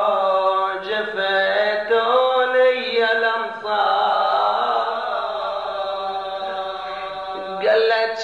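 A man chanting solo into a microphone in a drawn-out, melodic voice, the notes wavering and bending in pitch. About halfway through he holds one long note that slowly fades, then starts a new rising phrase near the end. The old recording sounds dull, with no treble.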